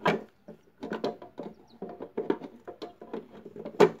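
Hard plastic parts of an aquarium canister filter being handled and pushed together, a series of clicks and knocks, with a sharp snap about a second before the end as a piece seats into place.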